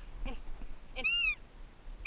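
A high-pitched animal call rising and falling once, about a third of a second long, about a second in. A second call starts at the very end.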